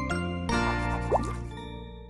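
Short musical logo sting for a TV station ident: a layered chord of steady synth tones, a fresh hit about half a second in, and a couple of quick rising pitch sweeps, dying away near the end.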